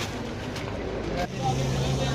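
Background chatter of voices with a steady low motor hum that sets in a little past halfway and grows stronger.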